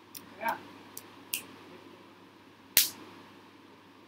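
Four sharp clicks, spaced irregularly, the loudest about three seconds in, with a brief spoken 'yeah' near the start.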